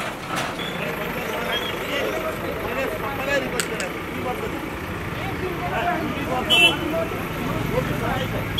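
Escorts DigMax II backhoe loader's diesel engine running steadily under indistinct overlapping voices of an onlooking crowd, with a couple of brief sharp knocks.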